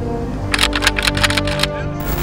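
Background music with steady held tones. About half a second in, a rapid, irregular run of sharp clicks lasts about a second, the crackle of a digital glitch transition effect.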